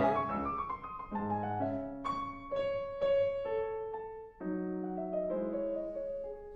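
Steinway grand piano played slowly: chords and single notes struck roughly once a second and left to ring, in a classical passage.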